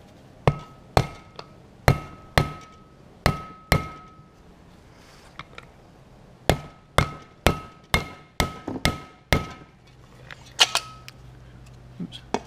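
Mallet striking an aluminium seal-installer driver to drive a grease seal into a front brake rotor hub: sharp blows about two a second, each with a short metallic ring, in two runs of about seven with a pause between, then a few more taps near the end.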